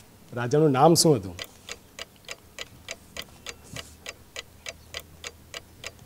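Quiz-show countdown clock sound effect ticking evenly at about three ticks a second while a team thinks over its answer, with a brief voice about a second in.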